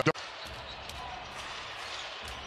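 Arena sound during an NBA game: a basketball dribbled on the hardwood court, faint knocks over a steady low background of the hall.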